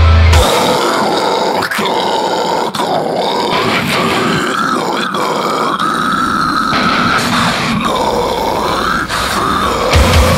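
Deathcore track: the heavy low end of the breakdown cuts out about half a second in, leaving a guttural growled vocal over the dense wash of the band.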